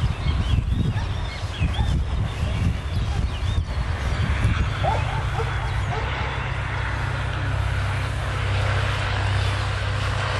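A dog giving short high yips and whines over uneven low rumbling. About four seconds in, the rumbling turns into a steady low hum.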